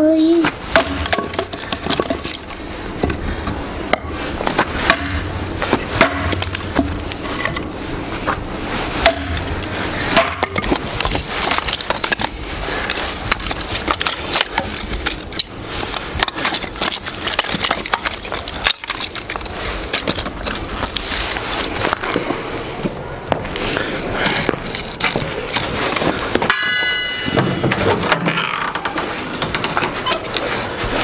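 Axe splitting firewood on a chopping block, with repeated knocks and the clatter of split pieces of wood being handled and gathered up. A brief high squeak near the end.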